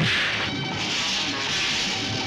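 Dubbed fight-scene punch sound effect: a sharp hit right at the start, trailing into a swishing whoosh that fades over the next second or two.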